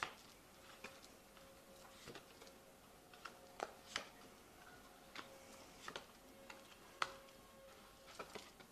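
Tarot cards being handled and laid down on a table: quiet, irregular soft clicks and taps about once a second.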